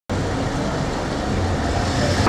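Road traffic on a wide city street: a steady rumble of passing cars that cuts in abruptly at the start.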